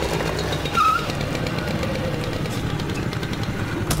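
Motorcycle engines running, a dense, steady sound with rapid firing pulses. A short high chirp comes about a second in.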